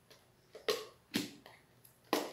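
Hard plastic parts of a Tupperware Quick Shake shaker cup clacking together as its top is handled and fitted onto the cup: two sharp clacks about half a second apart, then a fainter one.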